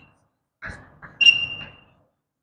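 Chalk writing on a blackboard: a couple of short scratching strokes, then a longer stroke about a second in that squeaks with a high, held tone for about half a second.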